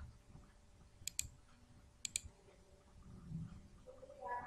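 Two computer mouse clicks about a second apart, each a quick pair of sharp ticks, over faint background hiss.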